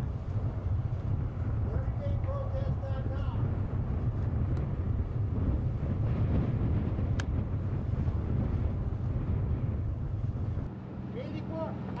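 Steady low rumble of wind on the microphone, with a faint voice briefly about two seconds in and a single tick later; the rumble drops away sharply near the end.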